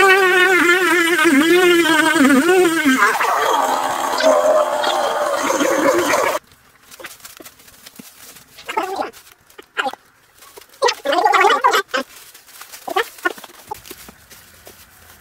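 Chainsaw cutting into a tree trunk, its engine note wavering up and down under load, then stopping suddenly about six seconds in. After that, short scattered sounds, a few of them voice-like.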